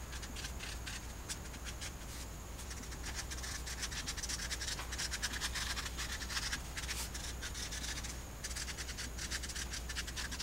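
Felt-tip marker writing on paper: rapid runs of short scratchy strokes as letters are drawn, with a brief lull near the end. A low steady hum sits underneath.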